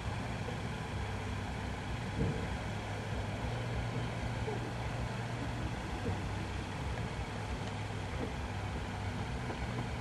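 A vehicle engine idling steadily: an even low hum that holds the same pitch throughout.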